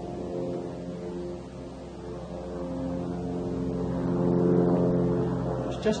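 A steady mechanical drone made of several held pitches, growing louder over the last couple of seconds.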